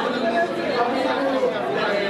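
Several people talking at once in a large room: overlapping chatter.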